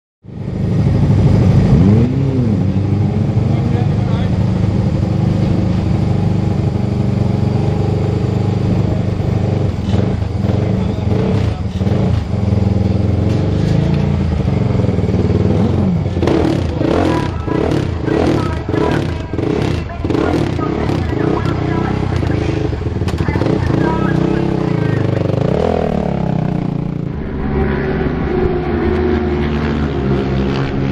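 A Suzuki Moto 450 supermono racing motorcycle's single-cylinder engine running loud. It is revved up and back down a few times.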